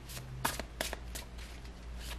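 A deck of tarot cards being shuffled by hand: several short, crisp card snaps about a third of a second apart.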